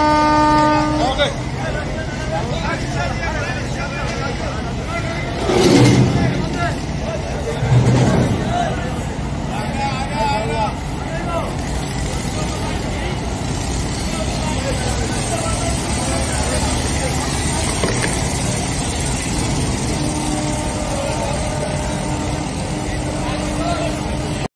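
A river passenger launch's horn blows a steady note that stops about a second in, over the continuous low rumble of the launch's engine and churned water. Voices murmur in the background, two louder low surges come about six and eight seconds in, and a fainter horn sounds again near the end.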